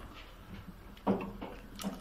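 Quiet kitchen room tone with a faint low hum, a brief wordless vocal sound from a man about a second in, and a light click near the end.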